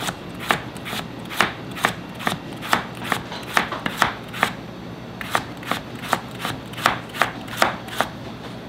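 Chef's knife slicing a carrot on a plastic cutting board, each cut ending in a sharp tap of the blade on the board, in a steady rhythm of about five cuts every two seconds with a short pause about halfway through.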